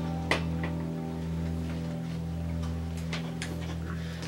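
A steady low hum with a few light clicks of a fork against a plate.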